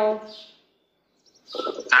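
A person talking: a phrase trails off in the first half-second, then there is about a second of dead silence, and talking resumes near the end.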